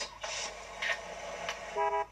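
A car horn honks briefly near the end, after a short burst of noise at the start.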